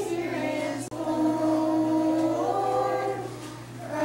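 A group of young children singing a song together, holding notes that step up and down in pitch, with a short break between phrases about a second in.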